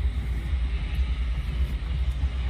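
Steady low rumble of outdoor background noise in a phone recording, with a faint hiss above it.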